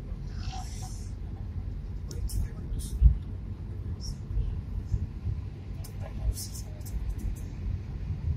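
Low in-cabin rumble of a Suzuki Swift hatchback driving on a rough mountain road, with irregular jolts from the surface and one sharp bump about three seconds in.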